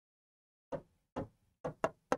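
Fingertip tapping keys on the on-screen keyboard of a large interactive touchscreen panel: four sharp taps, starting under a second in, the last two close together.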